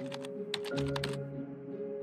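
A quick run of clicks, like keyboard typing, over steady background music; the clicking stops about a second in.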